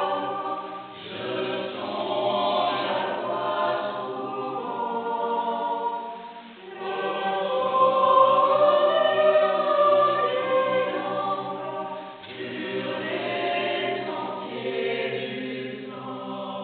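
Mixed choir of women's and men's voices singing unaccompanied in sustained chords, the phrases broken by short breaths about every five to six seconds.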